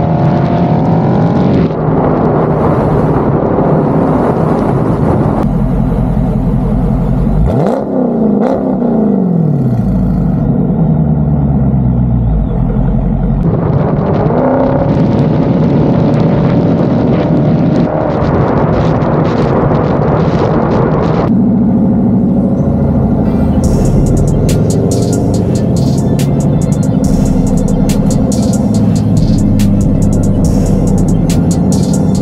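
Dodge Charger Scat Pack's 6.4-litre 392 HEMI V8 exhaust while driving, the engine note sweeping up and down with throttle and gear changes. There is a sharp dip and rise in pitch about eight seconds in.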